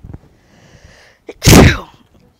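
A woman sneezes once: a faint breathy intake, then a single sharp, loud burst about one and a half seconds in.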